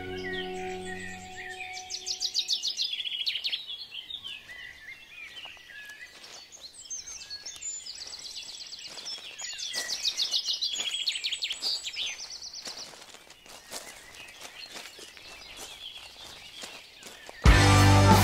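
Birds singing outdoors, with quick high chirps and several fast trills, as soft sustained music fades out in the first second or two. Just before the end, loud rock music cuts in abruptly.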